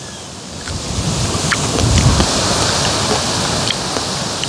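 Wind buffeting the microphone outdoors: a steady rushing noise that swells about half a second in, with a low rumble near the middle.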